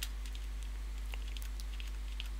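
Steady low electrical hum in the recording, with faint small clicks scattered through it.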